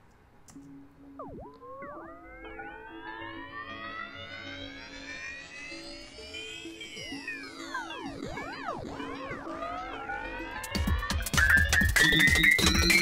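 Synth melody played through Ableton's Shifter pitch effect on its "Race Car" preset: the pitch swoops in wide, siren-like glides that rise to a peak and fall away, over steady held notes. About eleven seconds in, a loud drum loop comes in, also pitch-shifted, with rising sweeps.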